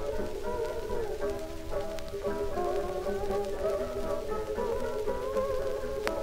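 Early acoustic recording of Hawaiian guitar music from 1918, thin and narrow in sound: a melody that slides between notes, in the manner of a Hawaiian steel guitar, over a steady plucked guitar accompaniment.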